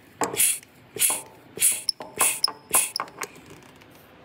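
Vacuum brake bleeder on the rear bleeder valve of an Austin-Healey Sprite, worked in a quick series of short hisses, about two a second, as it sucks air and brake fluid through the brake line. The hisses thin out toward the end.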